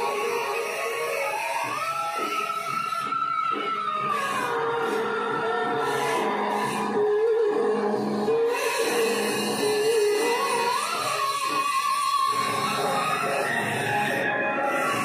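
Music: a melody of long held notes that waver and glide up and down, with other parts underneath.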